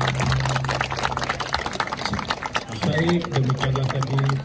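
Balinese procession music with dense, rapid metallic percussion strikes. A low held tone stops about one and a half seconds in, and voices come in near the end.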